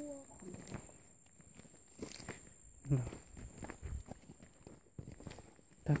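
Footsteps of a person walking through a field of young rice plants: soft, irregular steps with brushing of the plants. A brief voice sounds about three seconds in.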